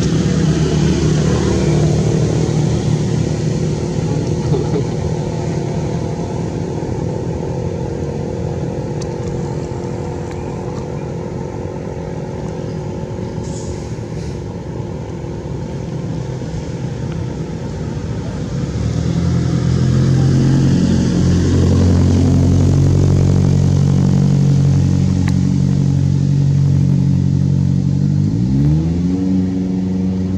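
A motor vehicle engine running steadily, growing louder about two-thirds of the way in, then rising in pitch near the end as it speeds up.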